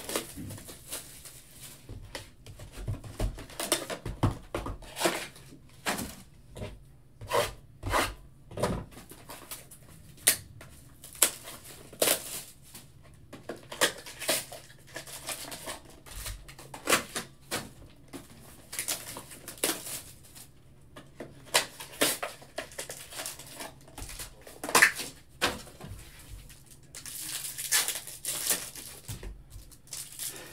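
Handling of a cardboard trading-card box and its foil-wrapped packs on a table: irregular clicks, knocks and rustles as the box is opened and the packs are taken out and stacked, then a few seconds of crinkling rustle near the end as a foil pack is torn open.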